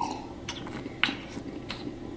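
A man taking a sip of beer from a glass and swallowing: three short soft clicks about half a second apart, over a low steady hum.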